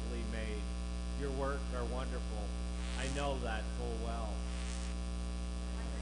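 Steady electrical mains hum with a buzzy overtone, under one voice reading aloud in short phrases that stops about four and a half seconds in.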